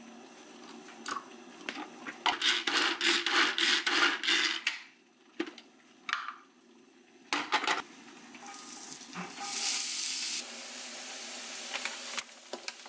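A red hand-operated food chopper worked in a quick run of strokes for a couple of seconds, chopping onion. A short clatter follows, then a steady hiss that lasts to the end.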